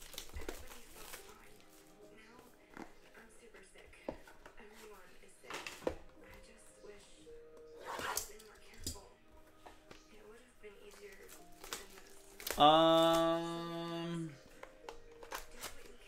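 Sealed trading card hobby boxes being handled and opened: light cardboard knocks, clicks and wrapper crinkles, with a box cutter taken to a box's shrink wrap about halfway through. Near the end a loud held pitched tone sounds for under two seconds.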